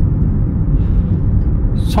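Steady low rumble of road and engine noise inside a Chevrolet car's cabin, cruising at a constant speed of over 40 km/h.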